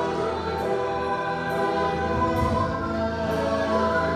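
A choir singing together in slow, held notes, the voices sustaining chords without a break.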